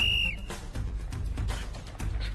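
A single short blast on a coach's whistle starting a race, followed by background music with a heavy low beat.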